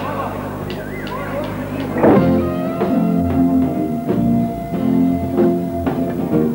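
Live band starts up about two seconds in: electronic keyboard with a long held note over chords, a rhythmic bass line and a steady beat. Before that there are room voices.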